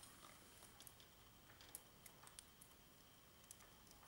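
Near silence with a few faint, light clicks of a metal chain being handled.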